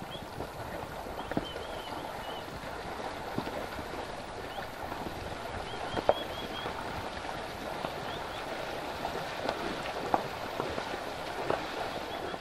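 Cattle and horses wading through a shallow river: a steady rush of moving water with many small splashes from their legs.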